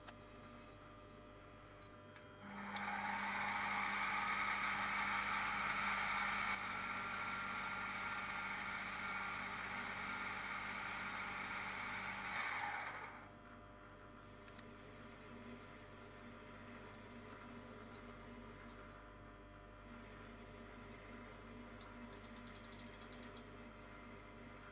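Mini mill's spindle motor running steadily while a twist drill bores into a small brass part. It starts about two and a half seconds in, right after a single click, runs for about ten seconds, then winds down.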